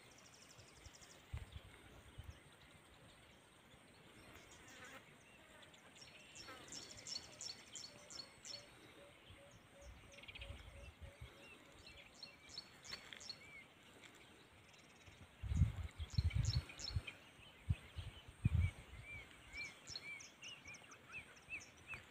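Faint outdoor bird calls: groups of quick high chirps and trills, a short run of evenly spaced lower notes about eight seconds in, and a string of short arched chirps near the end. A few low thumps come between about sixteen and nineteen seconds.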